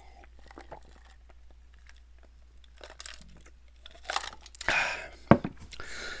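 A man drinking from a glass: faint sips and swallows at first, then louder wet mouth sounds about four seconds in and a single sharp click just after five seconds.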